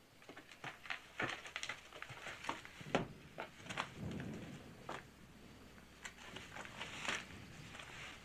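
Irregular clicks, knocks and rustling of a soldier moving about and handling his rifle and a field telephone handset, with one sharper knock about three seconds in.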